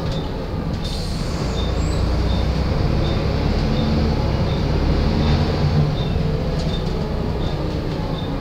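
Volvo ALX400 double-decker bus heard from inside the passenger saloon on the move: steady engine and road rumble, with the low engine note swelling for a few seconds mid-way.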